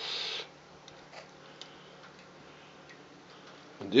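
A brief hiss-like scrape at the very start, then faint, sparse ticks from a wood-burning rocket stove whose top air inlet has just been turned nearly shut to slow the burn.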